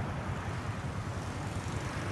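Steady low rumble of motorbike engines, even throughout with no sudden sounds.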